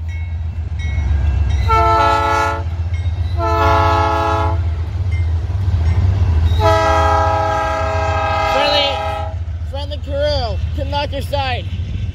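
BNSF freight diesel locomotive horn sounding two short blasts about two seconds apart, then a longer blast of over two seconds, over the steady low rumble of the passing locomotives and train.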